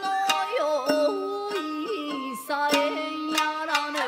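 Shamisen accompaniment with a woman singing a Japanese geisha-repertoire song, her voice bending and wavering between held notes. Sharp plucked shamisen notes punctuate it.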